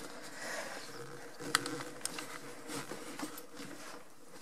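Quiet room tone: a faint steady hum with a few light clicks, the sharpest about one and a half seconds in.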